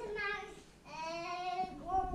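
A young child's voice with no clear words: a short sound at the start, then from about a second in one longer held, sung-out note that rises slightly and then falls.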